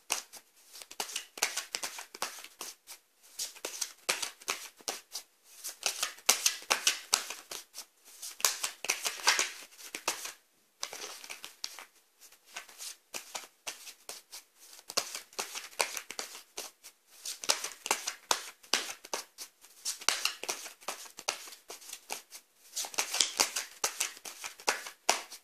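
A deck of tarot cards being shuffled by hand: a fast patter of card snaps in runs of a few seconds, with brief pauses between runs.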